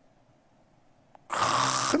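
A man pauses in his speech: a second or so of near silence, then a loud breath drawn in close to the microphone just before he resumes talking.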